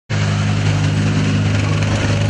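Armoured military vehicle's engine running in a steady, loud, low drone as the vehicle drives, over a broad rushing noise.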